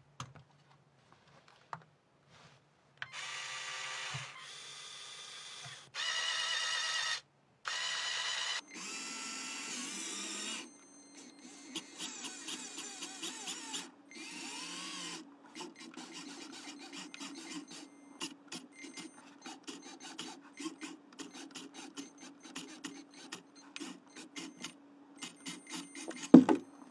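Small LEGO Technic electric motors whining in separate bursts of a second or two, starting and stopping at different pitches. Then comes a steadier low hum under a dense run of rapid clicks as the robot climbs.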